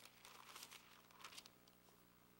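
Faint rustling of Bible pages being turned by hand, in two brief bursts, over near silence.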